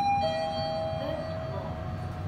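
Elevator arrival chime of a Mitsubishi traction elevator: two tones, a higher one then a lower one a moment later, both ringing on for well over a second as the car arrives at the floor travelling down.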